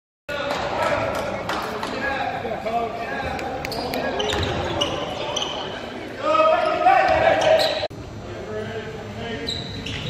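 A basketball bouncing on a hardwood gym floor during play, among players' and spectators' voices in the gym. The voices get louder about six seconds in, then cut off sharply near eight seconds.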